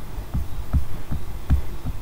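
A run of soft, low thumps, several a second and unevenly spaced.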